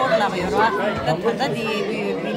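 Speech only: a woman talking, with the chatter of other voices in a room.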